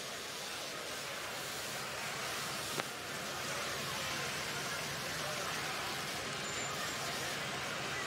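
Steady, even noise of a crowded arena during a robot match, rising slightly, with one sharp click nearly three seconds in.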